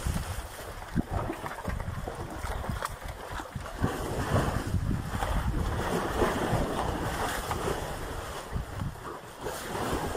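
Dip wash in a concrete cattle dip tank splashing and sloshing as cattle swim through it. Wind buffets the microphone, adding an uneven low rumble.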